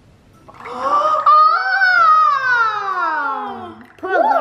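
A high voice drawing out a long wordless 'ooooh', rising in pitch for about a second and then sliding steadily down for about two seconds.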